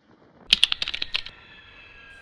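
A rapid run of about a dozen sharp clicks, like keyboard typing, lasting under a second and starting about half a second in, followed by faint steady high tones.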